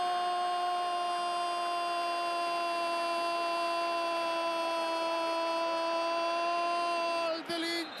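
Football commentator's long drawn-out goal call, a single shouted "gooool" held at one steady high pitch for about seven seconds, breaking off near the end into ordinary speech.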